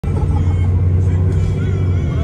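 London bus running, a steady low drone heard from inside the passenger cabin, with faint passenger voices over it.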